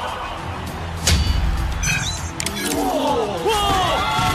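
Dramatic score with a heavy low impact about a second in, then a crowd cheering and shouting that swells in from about three seconds in.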